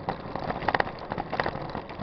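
Mountain bike rolling over a rough rural road, heard from a camera mounted on the bike: steady tyre and road noise with irregular rattling clicks from the bike and mount.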